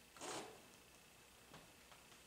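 Near-silent room tone with one brief soft rustle at the pulpit a quarter second in, and a faint tick later.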